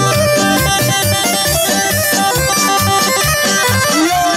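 Instrumental Bosnian izvorna folk music for a kolo dance, with a fast, even beat, amplified through loudspeakers.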